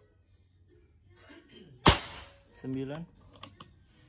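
A single shot from a Bocap FX-type PCP (pre-charged pneumatic) air rifle about two seconds in: one sharp crack with a short fading tail.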